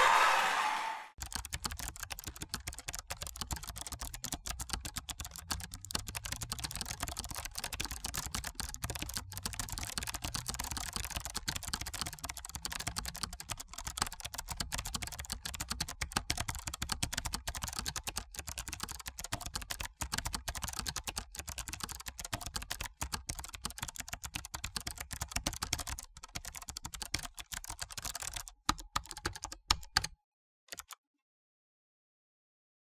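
The last sung note fades out in the first second, then rapid keyboard typing clicks run on as a typing sound effect, thinning out and stopping just before the end.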